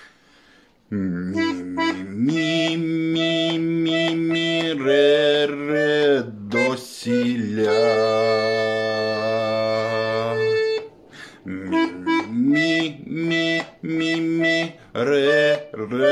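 Bayan (Russian chromatic button accordion) playing a melody on its right-hand keyboard alone, without bass accompaniment. It starts about a second in with sustained reedy notes, holds one long note in the middle, and pauses briefly about two-thirds through before the tune goes on.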